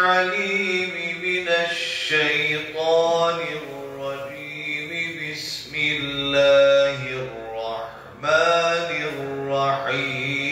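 A man reciting the Qur'an in a melodic chant into a microphone: one voice in long drawn-out notes that glide up and down, with a short breath pause near eight seconds.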